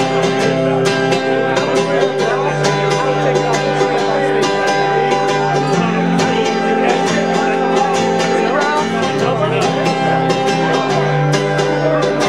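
Acoustic guitar strummed in a steady, even rhythm, playing a song's instrumental intro, with the chord changing every few seconds.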